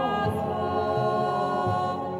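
Male choir of Benedictine monks singing long held notes.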